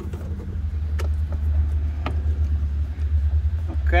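Steady low rumble, with faint clicks about one and two seconds in as a hose fitting on a camper's check valve is tightened by hand.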